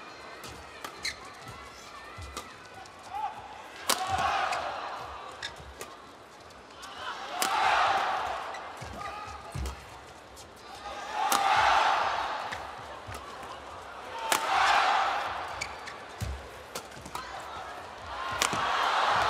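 Badminton rally in a packed arena: sharp cracks of rackets striking the shuttlecock come every second or two, and the crowd noise swells up four times as the exchange goes on.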